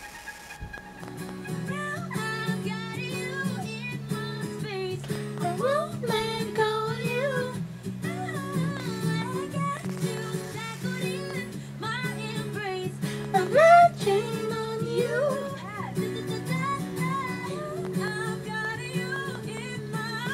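Female pop vocal group singing live, one lead voice over a steady low accompaniment; the singing comes in about a second and a half in.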